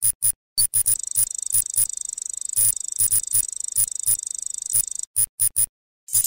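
Electronic sound effects for an animated loading-bar logo intro. There is a run of short digital blips and clicks, and a high, rapidly fluttering electronic buzz from about one second in to about five seconds. A few more blips follow near the end.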